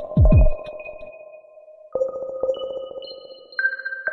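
Experimental electronic music: sustained ping-like synthesizer tones with a deep falling sweep just after the start. New, higher tones come in about two seconds in and again near the end.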